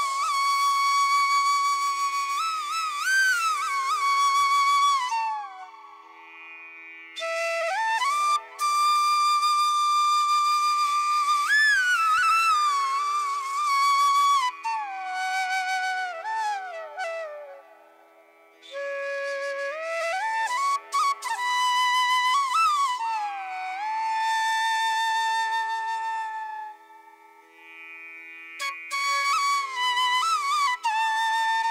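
Background music: a slow solo flute melody with long held notes and sliding ornaments, played in phrases separated by short pauses over a steady drone.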